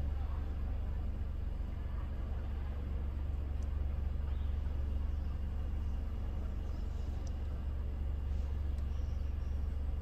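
Steady low rumble inside a parked car's cabin, with a few faint light clicks scattered through it.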